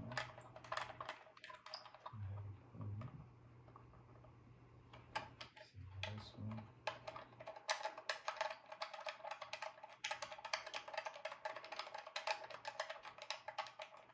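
Rapid small clicks and ticks of fingers turning and tightening the screw caps of a speaker's binding posts down onto the wire. The clicks are sparse at first, come thick and fast from about five seconds in, and stop suddenly near the end.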